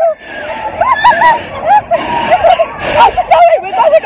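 Several girls' high voices squealing and calling out without clear words on a fairground ride, short rising and falling cries one after another.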